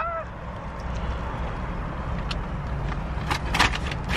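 Steady low rumble of a car's idling engine heard inside the cabin, with a few short clicks near the end.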